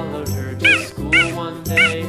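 Cheetah chirping three times, short high-pitched calls that rise and fall in pitch, about half a second apart, over cheerful background music.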